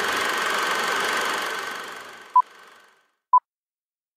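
A steady, noisy sound bed with a high held tone fades out over the first three seconds. Short electronic beeps at one pitch follow, about one a second, two of them before the end.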